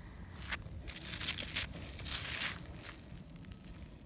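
Several short, irregular scratchy rustling noises, close to the microphone.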